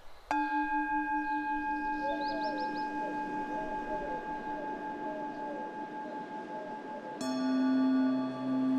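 A singing bowl struck once, ringing on with a slow wavering as it fades. A second, lower-pitched bowl is struck near the end. Birds chirp faintly in the background.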